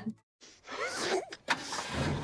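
After a short silence, a van's engine and road noise, heard steadily from inside the cab, come in suddenly about three-quarters of the way through.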